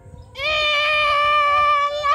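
A single long, high-pitched cry that starts about half a second in and is held nearly steady in pitch for about a second and a half.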